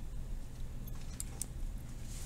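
Low, steady background hum, with a few faint, short clicks near the middle.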